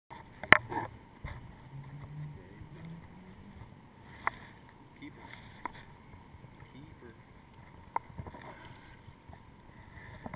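Light lapping of water with a few sharp knocks and clicks of fishing gear being handled, the loudest about half a second in and smaller ones spread through, while a hooked trout is brought to the landing net.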